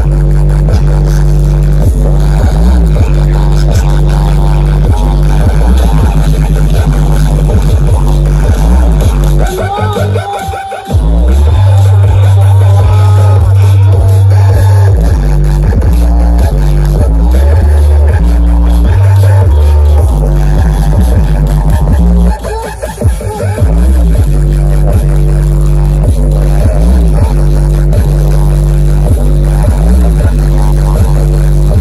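Very loud electronic DJ music with a heavy bass line, played through a towering stack of sound-system speaker cabinets. The music drops out briefly about ten seconds in and again a little past twenty seconds, then comes back in full.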